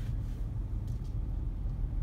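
Steady low rumble of a manual car's engine running, heard from inside the cabin.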